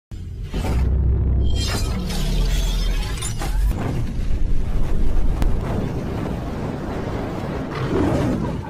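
Cinematic logo-intro music: deep bass booms with several sharp sweeping hits spread through it.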